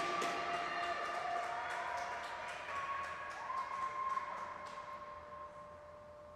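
Scattered applause and a few cheers from a small crowd in an echoing ice rink, dying away. A faint steady tone is left near the end.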